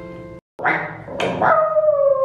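An acoustic guitar chord ringing out, cut off abruptly; then two short bark-like yelps and a long howl that slides slowly down in pitch.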